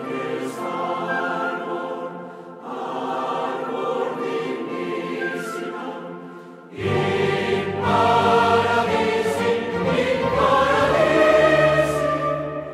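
Choir singing sacred choral music in sustained chords, phrase by phrase. About seven seconds in, a louder, fuller phrase begins with a deep bass underneath.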